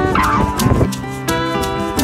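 Background music with plucked-string notes. In the first second a short wavering cry that bends downward in pitch sounds over it.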